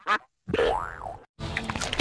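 A cartoon sound effect from the processed logo soundtrack: a springy tone that glides up in pitch and back down, between short breaks of silence, followed by a denser noisy stretch.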